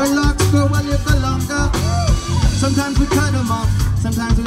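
Live band playing amplified music with a steady beat: drum kit, bass, electric guitar, keyboards and hand percussion.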